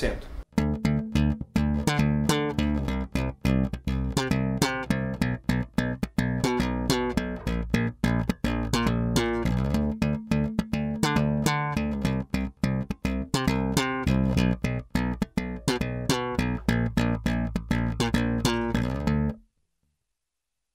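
Warwick Rock Bass Corvette electric bass played slap style: a busy groove of thumb slaps and popped notes, with the neck pickup alone, volume full, treble and bass at half. The playing stops abruptly near the end.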